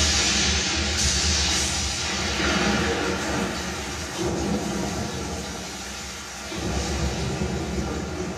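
Sonos Beam Gen 2 soundbar playing the storm soundscape of a Dolby Atmos demo trailer: a dense rushing noise with deep rumbling, which eases about six seconds in and swells again, under music.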